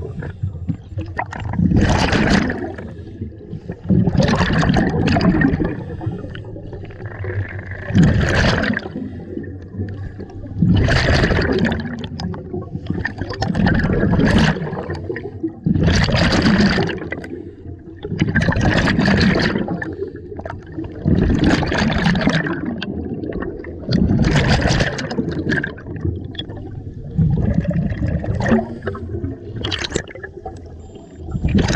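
Scuba regulator breathing heard underwater: each exhale sends a burst of bubbles rushing and gurgling past the microphone, with quieter pauses between, repeating about every two to three seconds.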